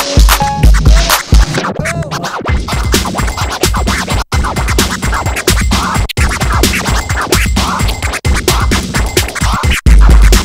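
DJ music played from vinyl, with records scratched on a turntable over it. The heavy kick-drum bass drops out about two seconds in and comes back in at the very end.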